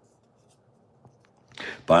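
Quiet room tone with a faint click about a second in, then a short breath drawn just before a man starts speaking near the end.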